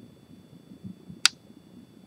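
Faint room tone with a thin steady high whine, broken a little past a second in by a single sharp click.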